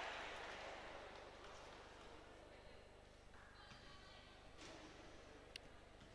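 Crowd applause in a basketball arena dying away over the first couple of seconds, leaving near silence with faint room tone and one faint click near the end.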